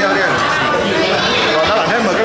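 Restaurant diners' chatter: many voices talking over one another at once.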